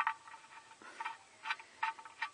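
A few light, irregular clicks as the oil drain plug, fitted with a new sealing washer, is threaded back into the sump by hand.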